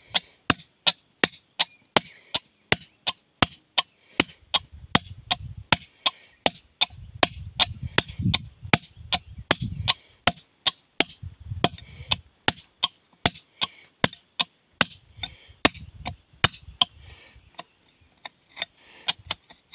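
Hand hammer striking a steel chisel on a stone slab: steady, even blows about two and a half a second, each a sharp clink.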